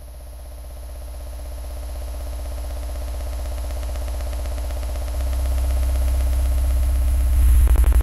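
Low electronic synthesizer drone with a fast, even pulse, swelling steadily louder and rising another step near the end.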